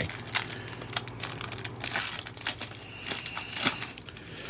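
Foil wrapper of a Topps Series 1 baseball card pack crinkling and tearing as it is peeled open by hand: a dense run of crackles.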